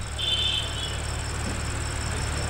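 Cricket chirping: one short high trill near the start, over a steady low hum.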